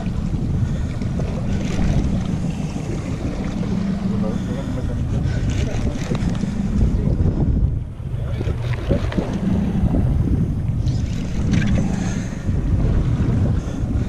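Wind buffeting the microphone on a moving boat, over the low, steady drone of an outboard engine, with a brief lull just before the middle.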